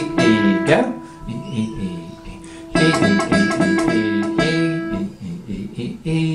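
Nylon-string classical guitar playing its open high E string, plucked repeatedly in an even rhythm on one steady note. One run rings out in the first second, and a second run of plucks starts about three seconds in and stops near five seconds.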